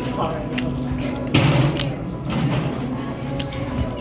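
Background music and indistinct voices, with a few light clicks.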